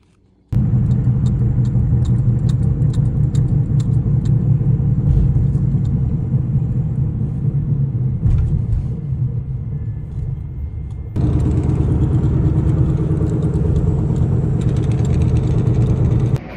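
Car engine and road noise heard from inside the cabin while driving: a steady low rumble that shifts and grows a little louder about eleven seconds in.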